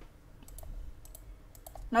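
Several faint computer mouse clicks, some in quick pairs.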